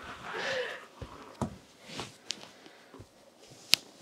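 Soft rustling, then a few light taps and scuffs as a person gets down onto hands and knees on a dance floor. A single sharp click near the end is the loudest sound.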